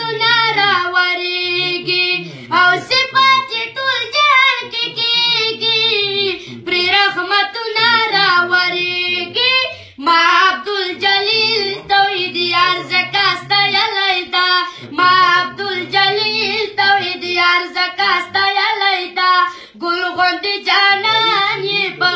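A boy singing a Pashto naat, a devotional song in praise of the Prophet, in a high voice with long melismatic phrases and short pauses between them.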